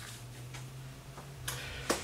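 Light handling noises of a sheet of paper being laid down and smoothed flat on a bench, faint ticks and rustles with two sharper clicks near the end, over a low steady hum.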